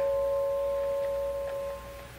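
Dramatic underscore music: a held chord of a few steady tones, slowly fading away.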